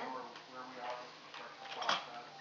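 A girl talking quietly, with one short sharp knock just before the end.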